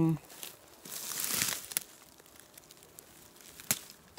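Rustling of low forest-floor shrubs being brushed and pushed through, a brief swishing rustle about a second in, then quieter with a few faint clicks and a sharper click near the end.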